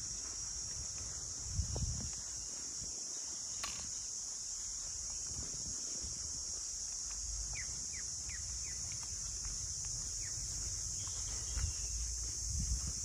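Steady high-pitched drone of insects in the trees, unbroken throughout. A few short falling chirps come in the second half, and there are low thumps about two seconds in and again near the end.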